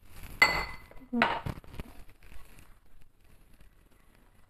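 A glass clinks against a ceramic mixing bowl with a short ringing tone as coconut is tipped in from it, followed moments later by a brief vocal sound, then faint handling noise.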